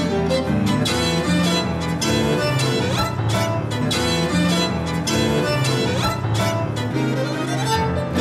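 Classical chamber music from violins, cello and piano: a lively bowed passage with sharply accented strokes and a rising slide near the end.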